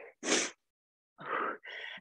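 A woman's breathing: a short, hissy exhale just after the start, then a longer, rougher breath near the end.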